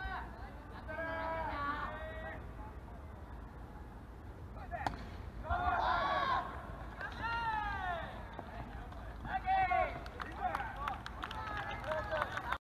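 Players' high-pitched shouts and calls across a baseball field, with one sharp crack about five seconds in: a bat hitting a rubber baseball for a ground ball to first base.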